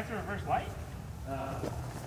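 Short, indistinct snatches of a man's voice, at the start and again about a second and a half in.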